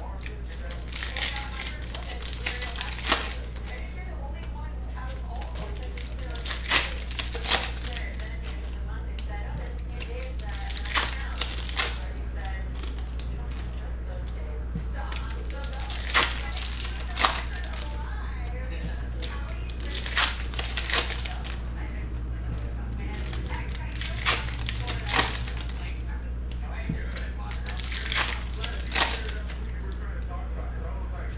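Foil wrappers of trading-card packs crinkling and tearing as packs are opened and the cards handled: short sharp crackles, often two close together, every few seconds, over a steady low hum.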